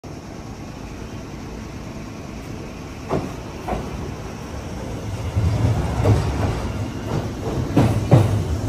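Kintetsu 22600 series two-car electric express train pulling out and passing close by. Its wheels clack over the rail joints, first twice about half a second apart, then in quicker succession over a low running rumble that grows louder as it nears.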